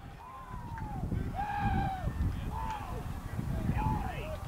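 Distant shouts from lacrosse players on the field: about four drawn-out calls, each rising and then falling in pitch, over a steady low rumble.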